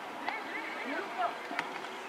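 Faint, distant shouts of players calling on a football pitch, with a single sharp knock about one and a half seconds in.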